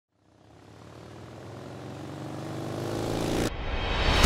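A vehicle engine, of the kind of a motorcycle, running at a steady pitch and growing steadily louder as if approaching, then cut off abruptly about half a second before the end.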